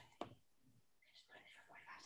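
Near silence: a very faint voice murmuring, with one small click a fraction of a second in.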